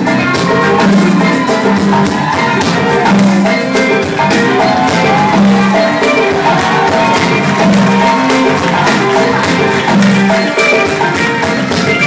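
Live Wassoulou band playing: dense, driving percussion with a low bass figure returning about every second and a half, and pitched melodic lines above.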